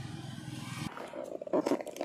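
Low rumble of a motor vehicle's engine on the road, cut off abruptly about a second in. Light handling clicks and rustles follow.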